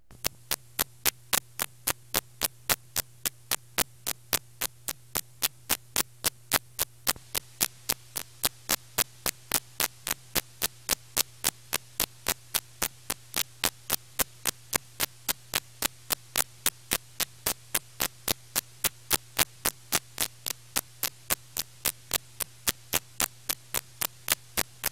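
Steady electrical hum and static from the blank, unrecorded end of an old videotape, with sharp clicks repeating evenly about three times a second. It starts abruptly as the recorded programme ends.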